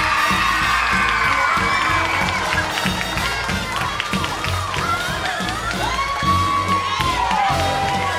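A crowd of children cheering and shrieking over music with a steady beat.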